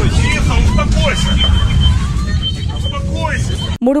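Loud low rumble inside the cabin of a burning Sukhoi Superjet 100 airliner, with passengers' voices crying out over it and a thin high tone sounding on and off. The rumble cuts off abruptly near the end.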